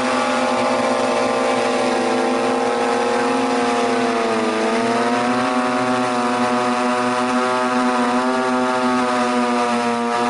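Rotors of the JTARV quadcopter in flight, a steady loud buzzing whine with several pitches stacked together. The pitch sags a little before halfway through and climbs back as the rotor speeds change, with a smaller wobble near the end.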